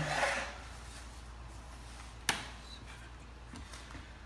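Clock base sliding briefly across a stone countertop as it is turned around, then a single sharp knock a little over two seconds in and a couple of faint taps near the end.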